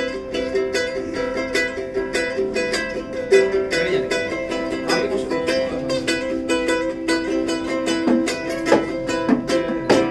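A small acoustic string instrument, of ukulele or small-guitar size, strummed in quick, even strokes, its chords ringing on under each new stroke.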